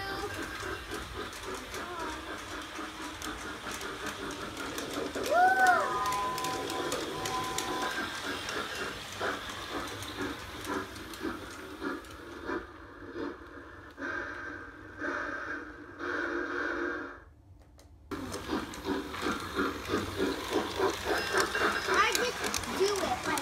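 Battery-powered toy Christmas train running on its plastic track with a steady clicking clatter, and a short whistle sound effect from the train about five seconds in that rises, falls and then holds for a couple of seconds. Children's voices are heard at times.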